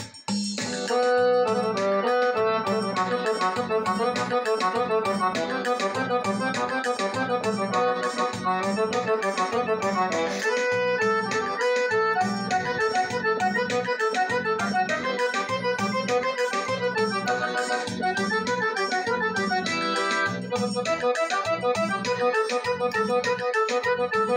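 Roland arranger keyboard playing a fast forró solo in an accordion-like voice, a quick stepping melody over the keyboard's steady built-in rhythm of bass and percussion.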